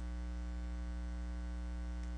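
Steady electrical mains hum with a ladder of higher hum tones above it, unchanging throughout.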